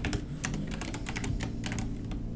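Computer keyboard being typed on: a quick run of key clicks, several a second.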